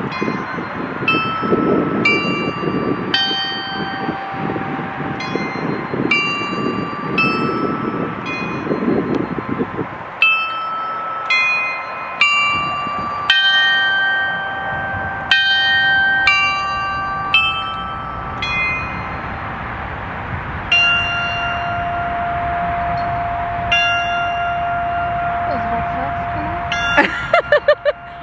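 A set of bells hung on a tall pole rings its chime on the hour as a tune of single struck notes, each ringing on, about one or two strikes a second. The strikes thin out after about twenty seconds, and one lower note rings on for several seconds near the end.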